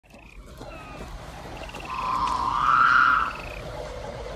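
Swamp ambience of frog-like calls: short, high, rapidly pulsed trills recurring every second or so, and a louder, longer, lower call that swells from about two seconds in and breaks off after about three seconds.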